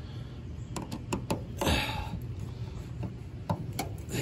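Screwdriver working the lug screws on a heat pump's line-voltage terminal block: a handful of small, scattered metal clicks and taps, with a short rush of noise a little before halfway. A steady low hum runs underneath.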